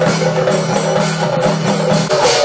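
Temple ritual percussion: a hand-held metal gong beaten with a stick in a fast, steady rhythm of about four strokes a second, over a steady low tone.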